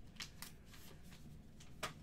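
Faint handling of trading cards in plastic sleeves as they are drawn out of a foil pack, with a few crisp clicks and crinkles, the loudest near the end.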